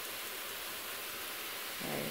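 Chicken fajita mix frying in a pan, a steady, even sizzle.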